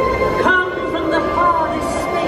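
Stage-show soundtrack from loudspeakers: sustained orchestral chords with a character's voice over them.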